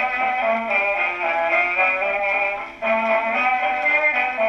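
Dance-band music from a crusty Goodson record played acoustically on an Apollo Super XII wind-up gramophone. The sound is thin with no bass, and there is a brief break in the playing about three quarters of the way through.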